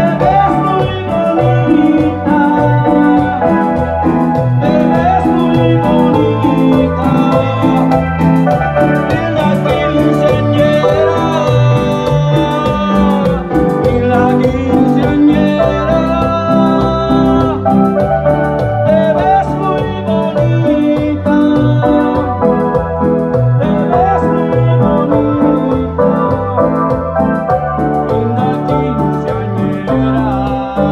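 Live music: a man singing into a headset microphone while playing an electronic keyboard, with a steady beat underneath.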